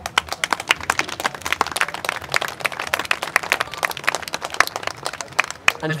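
A small audience clapping, many separate hand claps in a quick patter that dies away just before the end.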